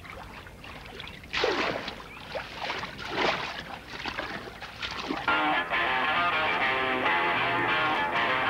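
Irregular water splashing of a person swimming, then music starts about five seconds in and carries on steadily.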